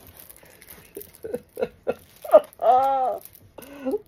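Light rustling of a plastic-wrapped diamond-painting canvas being unfolded, then short bursts of soft laughter from a woman. A drawn-out voiced sound, rising then falling in pitch, comes about two and a half seconds in.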